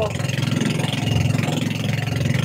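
Engine of a small motorized outrigger boat running steadily under way, a low even drone.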